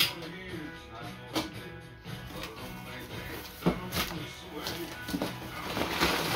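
A cardboard shipping box being handled and opened, with a few sharp knocks of the cardboard and a rustle of packing paper starting near the end, over faint background music.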